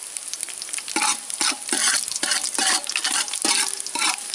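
Dried red chillies and cumin seeds sizzling in hot oil in an aluminium pot. From about a second in, a metal ladle stirs them, scraping against the pot bottom in repeated strokes.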